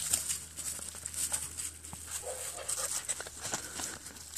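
A puppy crunching and rustling dry fallen leaves as it chews and tugs at a feathered bird wing, a dense run of crackles. A brief puppy vocal sound comes about two seconds in.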